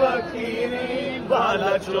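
Sai Baba devotional song (bhajan): a male voice singing in long held notes, with the next sung line starting near the end.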